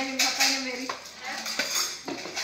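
Dishes and cutlery clinking and clattering as they are washed and handled at a kitchen sink, in irregular knocks.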